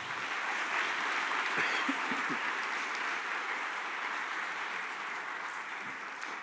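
Audience applauding, a steady clapping that eases slightly toward the end.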